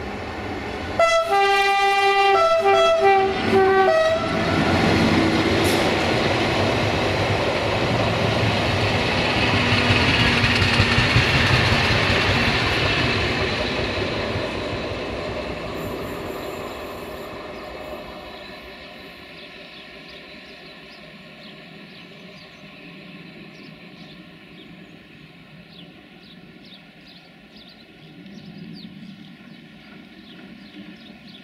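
BB25500 electric locomotive sounds its multi-tone horn in a few short blasts, then passes hauling coaches. Its wheels on the rails make a loud rolling noise that swells to a peak and fades away.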